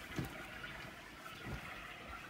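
Faint rustling and handling noise, with two dull low thumps: one just after the start and one about a second and a half in.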